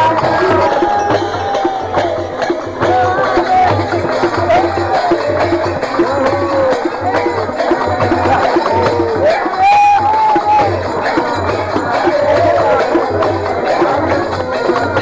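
Devotional music from a group: several voices singing over a barrel drum keeping a steady beat about twice a second.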